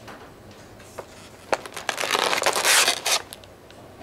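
Clear plastic punnet crackling and crinkling as a hand grips and lifts it: a click about a second in, then a dense run of crackles for about two seconds.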